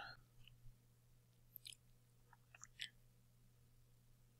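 Near silence: room tone with a faint steady low hum and a few faint small ticks.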